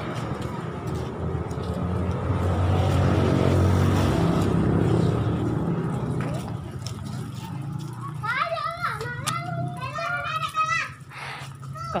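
A motor vehicle engine passing close by, its hum swelling to a peak about four seconds in and then fading. In the second half, high-pitched children's voices call out repeatedly.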